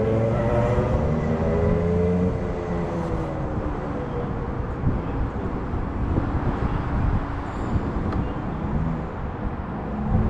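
Rotax two-stroke kart engine idling while the kart sits stationary. A steady pitched hum with a gliding tone over it drops away about two seconds in, leaving a rough, noisy rumble.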